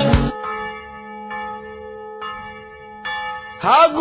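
A bell-like chime struck four times, about a second apart, each stroke ringing on as a steady tone. It follows the sudden end of a piece of music and gives way to a voice near the end.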